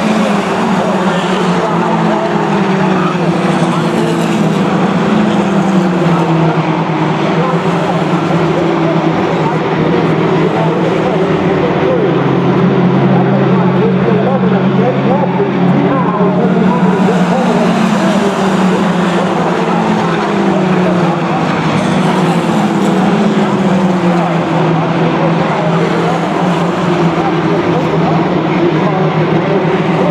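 A pack of four-cylinder Mini Stock race cars running laps on a short paved oval, many engines overlapping at once. Their pitch keeps rising and falling as the cars brake into the turns, accelerate off them and pass by.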